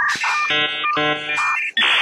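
Electronic alarm-style buzzer sound effects: a steady high beep ends, then two short harsh buzzes about half a second apart, then a loud burst of static-like hiss begins near the end.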